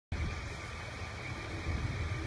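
A car idling: a steady low rumble with a light hiss of street background.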